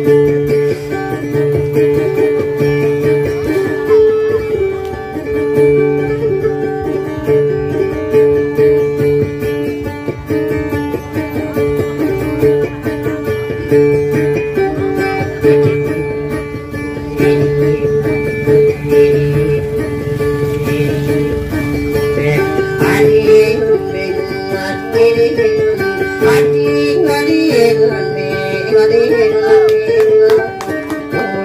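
Acoustic guitar playing a repeating plucked instrumental figure, the accompaniment of a Maranao dayunday song.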